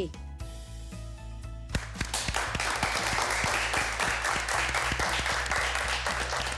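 Studio applause, many hands clapping, starting about two seconds in and continuing over a steady background music bed.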